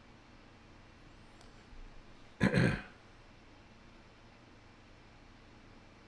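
A man clears his throat once, briefly, about two and a half seconds in, over faint room tone.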